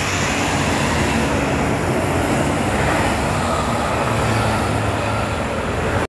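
Steady road traffic going by close to the roadside, with car, motorcycle and bus engines and tyre noise blending into an even hum.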